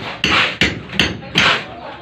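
Hammer and chisel chipping at a concrete block wall, about four sharp blows roughly 0.4 s apart, cutting a channel for electrical wiring.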